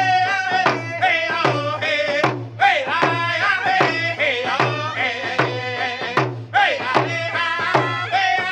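Powwow hand drum song: two men and a woman singing in high voices over two hand-held frame drums struck with beaters in a steady beat, about one and a half strokes a second. It is a round dance song, and the singing breaks off briefly twice for breath while the drums keep going.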